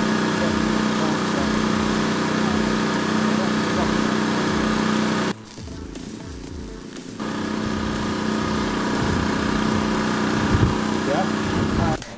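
A steady mechanical drone with a strong low hum, like a small engine running. It drops away suddenly about five seconds in and comes back about two seconds later.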